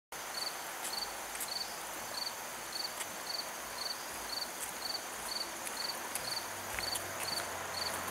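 An insect chirping steadily: short high-pitched chirps, each a quick run of pulses, repeating about twice a second over a faint steady hiss.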